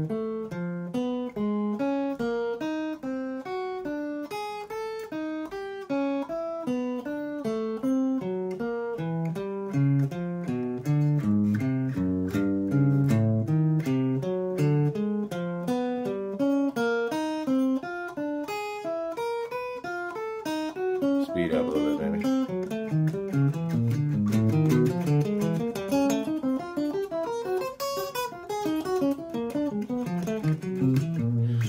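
Stratocaster-style electric guitar playing a chromatic warm-up exercise: single notes alternate-picked in a steady stream, one-two-three-four per fret position across pairs of strings, moving up the neck. About twenty seconds in, the notes climb into a higher register.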